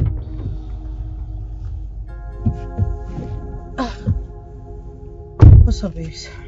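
Dramatic background score: a sustained synth chord with several low thuds that drop in pitch, like heartbeat-style drum hits. A loud low thud comes at the very start and the loudest one about five and a half seconds in.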